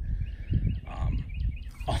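Bird calling: a held high note with a rapid run of short chirps over it, against low wind rumble on the microphone.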